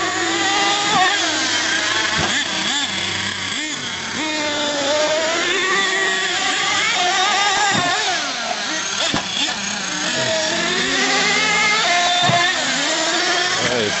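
Small two-stroke nitro engines of radio-controlled monster trucks revving up and down, several high whines overlapping and rising and falling. A sharp knock about nine seconds in comes just after a truck is in the air, fitting a landing.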